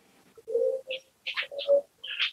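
A bird calling: short calls about half a second in and again after a second, each a low steady note with higher, thinner notes above it.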